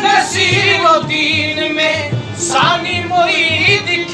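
Qawwali: men's voices singing with vibrato over harmonium, with a steady drum beat and hand-clapping keeping the rhythm.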